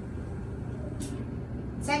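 Classroom room tone in a pause between spoken sentences: a steady low hum, with a short soft hiss about a second in.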